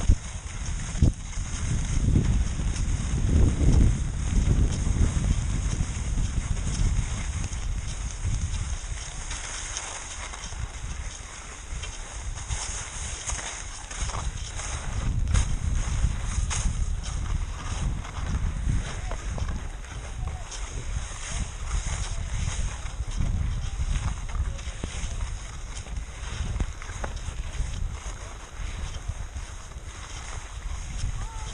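Skis sliding and scraping over snow on a downhill run, with wind buffeting the body-worn camera's microphone as an uneven low rumble, heaviest in the first few seconds.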